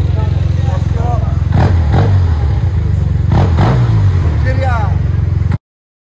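A large maxi-scooter's engine running loudly close by, revved briefly a couple of times, with voices over it; the sound cuts off suddenly near the end.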